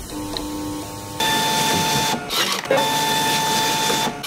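Toshiba ticket printer feeding and printing a ticket: a steady motor whine at one pitch, in two runs with a short break between them. It begins a little over a second in, after a quieter faint hum.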